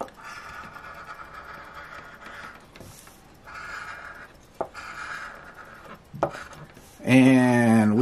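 A coin scraping the coating off a paper scratch-off lottery ticket in quick repeated strokes, in two spells with a short break about three and a half seconds in and a couple of light clicks. A man's voice comes in near the end.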